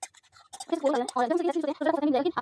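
A few light scratches and clicks at the start, then a person's voice with a fairly even pitch through the rest.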